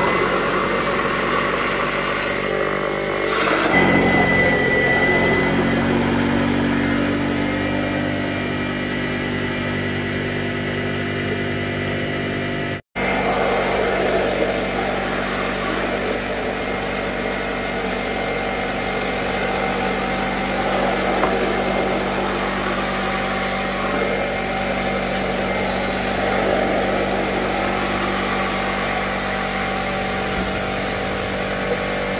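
Electric soybean grinder running steadily, its motor humming as it grinds soaked soybeans into a slurry for tofu, with the slurry pouring from its spout into a basin. The hum shifts about four seconds in, and the sound breaks off for an instant about thirteen seconds in.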